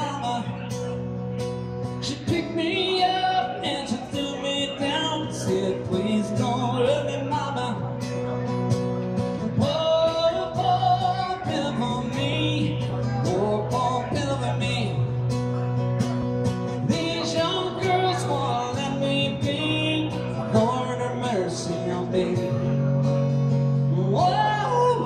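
Acoustic guitar strummed and amplified, with a man singing over it, a live country-rock song.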